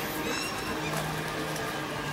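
Outdoor city-square ambience: a steady low hum, with a few faint, short high-pitched bird calls in the first half-second.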